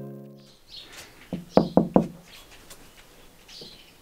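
A held musical chord fading out, then a baby's hands knocking on window glass: a quick run of knocks, the four loudest within about a second in the middle, each with a short dull ring.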